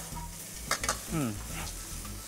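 A metal spatula stirs and scrapes dried tiny rice fish with garlic and bird's eye chilies around a stainless steel wok. The food sizzles lightly as it dry-fries in very little oil, with a few sharp scrapes of the spatula a little after the middle.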